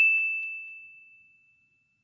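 A single high, bell-like ding sound effect, ringing and fading away over about a second and a half, with a few faint ticks as it dies out.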